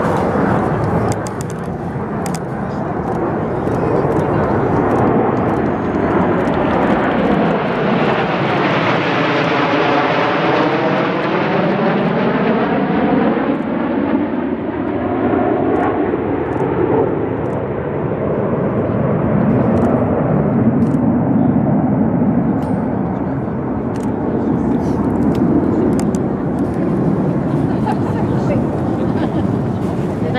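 Red Arrows formation of BAE Hawk jets flying over in a continuous jet roar. It is brightest and highest about ten seconds in, with a sweeping rise-and-fall pattern as the formation passes, then dulls as it moves away, with a second swell of rumble near twenty seconds.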